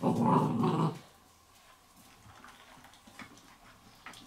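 A puppy growls once, for about a second, then goes quiet.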